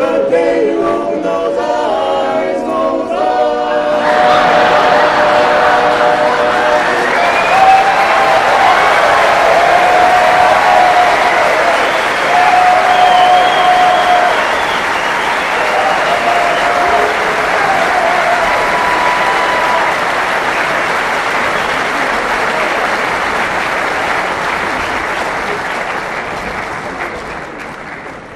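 A barbershop quartet sings the last notes of its song in close four-part harmony. About four seconds in, the audience breaks into loud applause with some whistling, which slowly fades toward the end.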